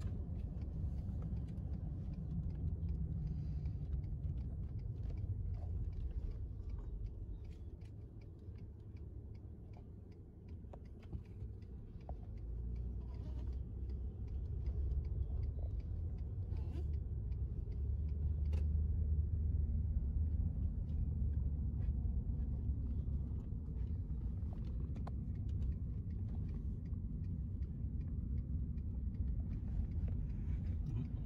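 Car driving, heard from inside the cabin: a steady low road and engine rumble that fades for a few seconds in the middle, then builds again and is loudest in the second half.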